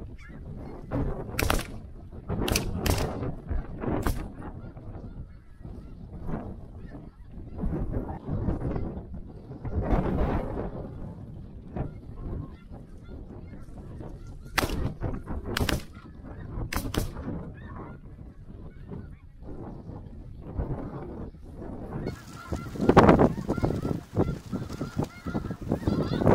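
A flock of snow geese honking overhead, with sharp shotgun reports in two volleys: about four shots a couple of seconds in, and another three or four around the middle.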